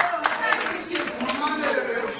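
A church congregation clapping, a few sharp claps a second, with several voices over the claps.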